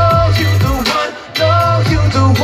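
Live pop concert music over a loud PA: a heavy bass beat under a held melodic line, with a brief drop in loudness a little past halfway.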